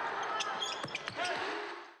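Basketball arena crowd noise with a basketball bouncing sharply a few times on the hardwood court during a free throw. A brief voice comes through about a second and a quarter in, and the sound fades out at the end.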